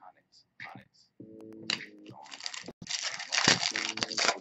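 Trading cards and crinkly foil pack wrappers being handled on a desk: scattered light ticks, then rustling and crackling that is loudest for about a second near the end.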